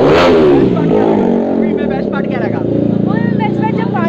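Voices talking, the speech not made out, over a steady low vehicle engine hum in the street, with a loud burst of sound right at the start.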